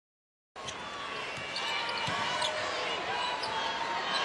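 After half a second of dead silence at an edit, basketball game sound in an arena: a basketball bouncing on the hardwood court over steady crowd noise, with short high squeaks scattered through it.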